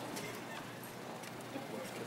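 Footsteps of a group of children walking across a hard floor, scattered short taps, over a low murmur of voices in the room.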